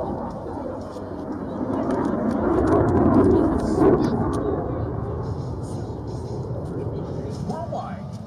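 Piston engines of a formation of WWII propeller fighters flying past, including a twin-boom P-38 Lightning: a low drone that swells to its loudest about three seconds in, then fades.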